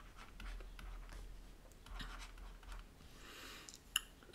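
Stylus writing on a tablet screen: faint, irregular scratches and taps as handwriting is put down, with a sharper tap just before the end.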